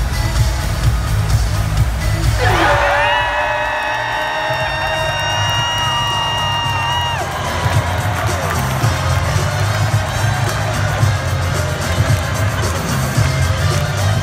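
Arena sound system playing music with a pulsing bass beat over a large crowd cheering. About two and a half seconds in, a held note slides up and sustains for about five seconds before cutting off.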